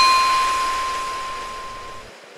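A single bell-like ding sound effect that rings at one clear pitch and fades away steadily over about two seconds.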